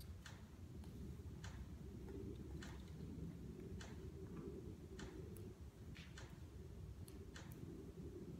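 Faint, sharp crinkles of a plastic tarp draped over a walking mule colt, about one a second and irregular as she steps, over a low steady rumble.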